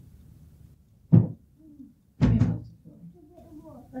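A single loud thud about a second in, then a quick double knock about a second later, over a quiet room.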